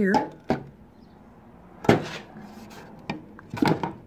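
Sheet-steel magnetic tray clacking against a steel tool cart as it is handled and set in place: a knock about half a second in, a louder clack near two seconds, and a quick cluster of knocks near the end.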